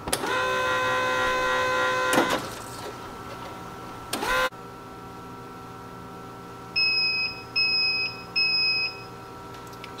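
Melitta Cafina XT4 super-automatic coffee machine starting its milk-system cleaning: a motor or pump whine rises and then runs steadily for about two seconds before stopping. Later come three short electronic beeps, evenly spaced about a second apart, as the machine prompts for the next cleaning step.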